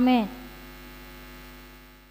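Steady electrical mains hum made of several held tones, left after a woman's voice stops at the start. It fades out near the end.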